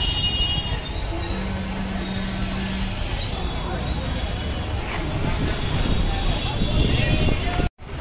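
Busy city-street traffic at a bus stand: buses and other vehicles running, with people's voices around. About a second in there is a steady low hum lasting a second and a half, and the sound cuts out briefly just before the end.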